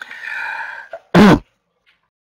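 A man clearing his throat: a raspy, breathy sound for about a second, then a short, loud voiced 'ahem'.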